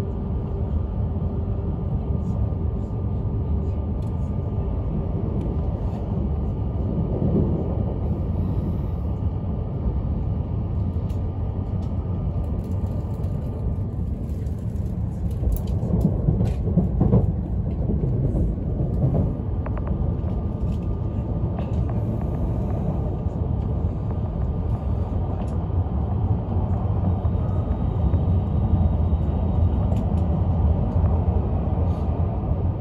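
Cabin running noise of an E5 series Shinkansen: a steady low rumble with a faint whine. A few louder knocks come about halfway through.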